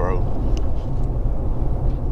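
Steady low rumble of engine and tyres heard from inside the cab of a moving vehicle.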